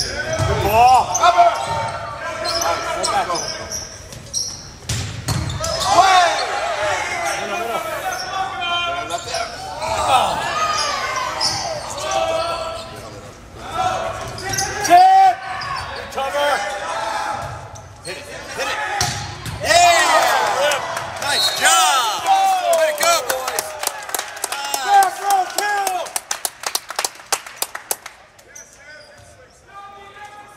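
Volleyball rally in an echoing gymnasium: sharp smacks of the ball being hit, mixed with loud shouts and yells from players and spectators. Near the end the yelling gives way to a quick run of hand claps.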